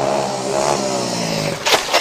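Mandarin pop ballad: a singer holds a long sung note over the band's accompaniment, then a few drum hits sound near the end.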